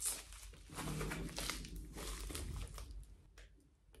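A person's stomach growling: a low gurgling rumble from about a second in, lasting roughly two seconds. It follows a brief crinkle of a small plastic packet handled at the start.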